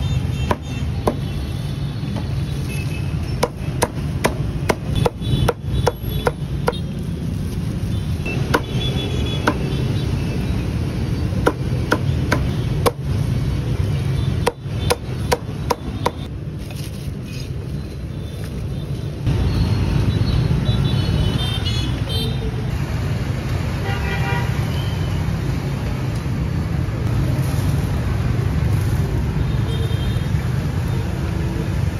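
Cleaver chopping roast goose on a thick wooden chopping block: many sharp chops, some in quick runs, through the first half, stopping about halfway. Steady traffic rumble runs underneath and grows louder for the second half.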